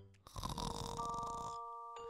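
A cartoon snore from a sleeping pig character: one long, noisy snore that fades out after about a second and a half. Soft held music notes come in under it about a second in.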